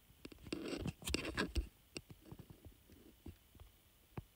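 Light rustling and scattered small clicks of things being handled close to the microphone, busiest in the first half and thinning to a few faint clicks.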